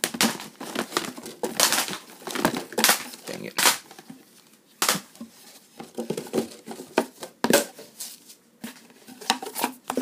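Hands rummaging in a cardboard box, rustling and scraping card and paper packaging, with irregular crinkles and light knocks as a card sleeve is pulled out.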